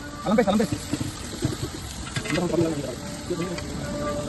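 Voices talking briefly twice over a steady background hiss, with a few light clicks and knocks in between.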